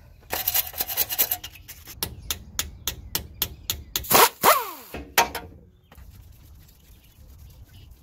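Outer tie rod end being spun off the threads of the inner tie rod by hand, metal rasping and clicking on the threads: a quick run of clicks, then evenly spaced clicks about four a second. A short laugh comes about four to five seconds in.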